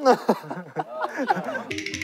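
Voices talking and chuckling, with a karaoke backing track starting faintly just before the end.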